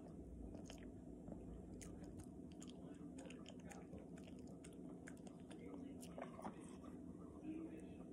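Chihuahua licking and chewing soft wet dog food off fingers: quiet, irregular wet smacks and clicks of its tongue and mouth.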